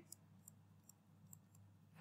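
Near silence with a few faint, short clicks spread through it, typical of a stylus tapping a tablet screen while writing.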